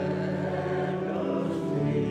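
Church pipe organ playing sustained chords, with one chord change near the end.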